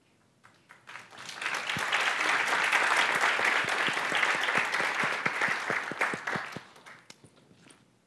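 Audience applauding: the clapping starts about a second in, swells, holds, and dies away around the seventh second.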